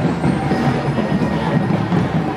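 Crowd noise: many voices blended into a dense, steady rumble, with no single voice standing out.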